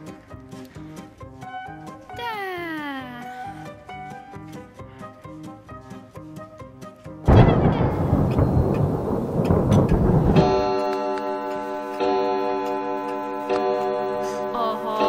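Playful background music with a sliding, falling note about two seconds in. About seven seconds in, a sudden loud rumbling crash like thunder lasts about three seconds. It gives way to a steady, sustained ringing like a striking bell or clock chime, used as a stage sound effect.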